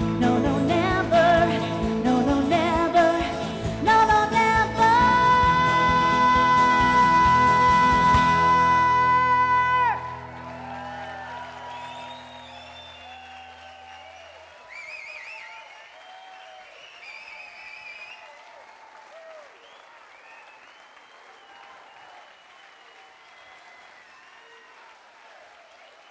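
A live band with acoustic guitars, bass and drums ends a country-pop song under a woman's long held sung note, which cuts off about ten seconds in while the last chord rings out. Audience applause with scattered cheers follows and gradually fades.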